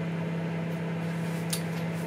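Steady low electrical hum of a kitchen appliance running, with one faint click about one and a half seconds in.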